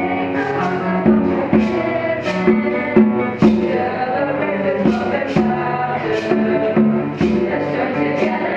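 Middle school mixed choir of girls and boys singing in harmony, with held chords, over an accompaniment with sharp percussive strikes about once or twice a second.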